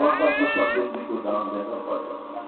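A short high-pitched cry, under a second long, bending in pitch near the start, heard over a man's voice.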